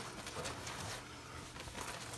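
Faint rubbing of a Norwex microfiber window cloth wiping a glass surface, over a low steady hum.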